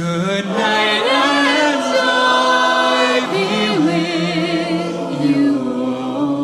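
Mixed-voice a cappella choir singing held, wordless chords, with one higher voice sliding and wavering above them.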